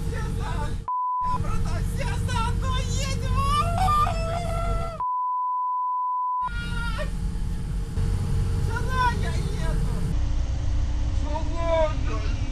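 Two censor bleeps, a steady single tone that blanks out everything else: a short one about a second in and a longer one of about a second and a half near the middle. Between them a man shouts over the steady low rumble of a moving bus.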